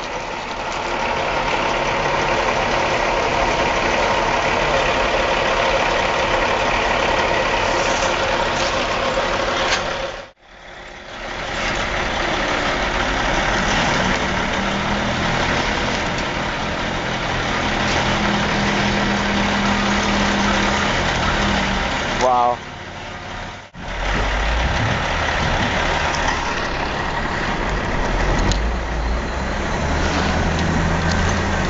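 Steady noise of heavy machinery in a log yard: a diesel engine idling under a rail-mounted tower crane as it unloads a log truck with its grapple. The sound cuts off abruptly about ten seconds in and again near twenty-four seconds, with a brief wavering tone just before the second cut; after it a wheel loader's diesel engine runs with a deeper rumble.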